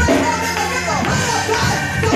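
Live worship music: a woman singing into a microphone over steady low instrumental backing.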